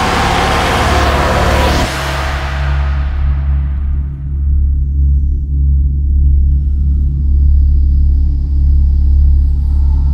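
Live choir music: a loud, dense massed-voice passage cuts off about two seconds in, and its reverberation dies away over the next few seconds. A steady deep drone sounds on underneath.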